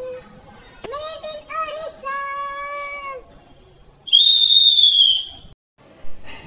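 A high, wavering sung tune ending in a held note, then about four seconds in a loud, shrill whistle lasting about a second that falls slightly in pitch before the sound cuts out.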